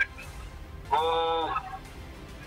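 A man's voice coming through a phone line, holding one drawn-out, flat-pitched "wo…" for just over half a second about a second in, as he starts to answer. Background music runs low underneath.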